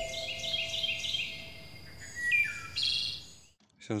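Songbirds chirping in short repeated calls with a few falling whistles and a brief trill, under the dying tail of a held music tone.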